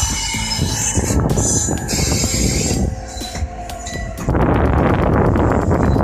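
An E233-3000 series electric train running slowly over the yard tracks. The wheels rattle over the rails, and the noise gets louder about four seconds in.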